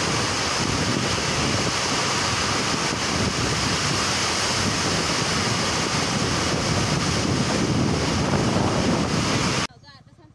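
Gusty wind and heavy rain in a storm, the wind buffeting the microphone in a loud, steady rush of noise that cuts off abruptly near the end.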